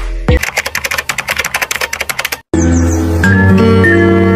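A rapid run of sharp clicks, about ten a second, lasting roughly two seconds, like typing; it stops dead, and after a brief gap a new piece of melodic music begins.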